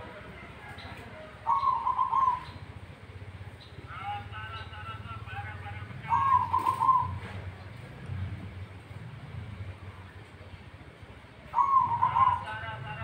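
Zebra dove (perkutut) cooing: three short, quavering coo phrases about five seconds apart, each the loudest sound in its moment, over a steady low hum.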